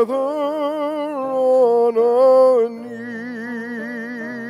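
A solo voice singing a slow spiritual in long held notes with vibrato, with piano. A little under three seconds in it drops to a softer held note.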